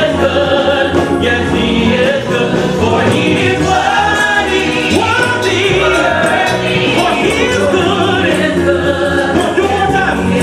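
Gospel praise team singing: a male lead vocalist on a handheld microphone with a choir of backing singers, amplified through the sound system.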